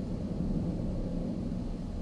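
Steady low rumble with faint hiss, no speech: background room tone.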